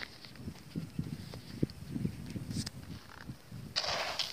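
Irregular low bumps and small clicks of footsteps on soil and a handheld bucket. Near the end comes a brief gritty rustle as a hand plunges into a bucket of Phonska NPK fertiliser granules.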